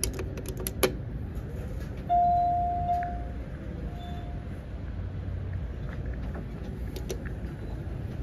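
Clicks of an elevator call button being pressed, then the Otis elevator hall lantern chime: one long tone about two seconds in and a shorter, fainter second tone about a second and a half later, signalling a car arriving to go down.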